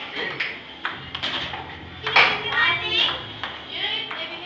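Table-tennis ball clicking off paddles and the table several times in quick, uneven succession during a rally.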